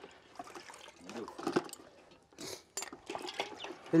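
Water sloshing and splashing in a plastic bucket as a hand and knife are rinsed in it, with a couple of short splashes past the middle.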